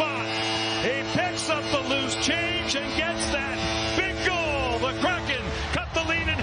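Hockey arena goal horn sounding as one long steady blast over a crowd cheering, yelling and whistling for a home-team goal; the horn cuts off near the end.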